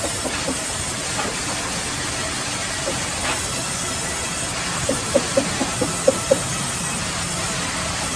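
Sawmill band saw running and ripping through a log, a steady rushing hiss, with a run of short sharp knocks about five to six seconds in.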